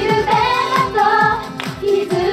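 Idol-pop girls' group singing live into microphones over a pop backing track with a steady kick-drum beat of about four thuds a second, all through a PA.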